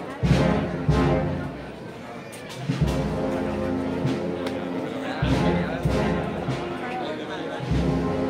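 A municipal wind band playing a processional march, with brass over low drum notes. It dips quieter for about a second near two seconds in, then carries on, with crowd voices underneath.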